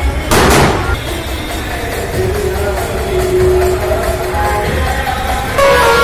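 Loud music from a procession band, sustained melodic tones over a low steady thumping. A short loud noisy crash about half a second in, and the music grows louder and fuller near the end.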